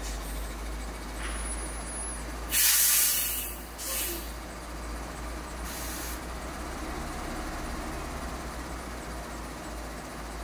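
Steady low rumble of a car driving, with a loud hiss about two and a half seconds in that lasts about a second, then a shorter hiss just after and a fainter one near six seconds.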